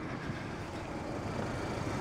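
Steady low background rumble of road traffic, with no distinct events.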